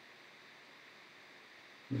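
Faint steady hiss of microphone and room noise between phrases of speech, with a man's voice starting right at the end.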